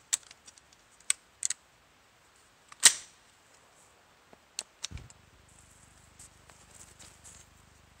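Metallic clicks and clacks of an AR-15's action and controls being worked to clear a double feed: a few light clicks, one sharp clack about three seconds in, then two more clicks a little before the five-second mark.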